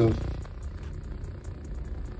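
A low, steady background hum, with the tail of a spoken word at the very start.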